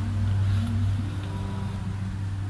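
A motor vehicle engine running close by as a steady low drone, with a slight change in pitch about a second in.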